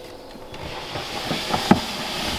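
A plastic snake-rack tub is slid out of its shelf, a steady scraping hiss of plastic on plastic, with two sharp knocks near the end.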